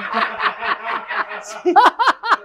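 Laughter: a quick, even run of short breathy laughs.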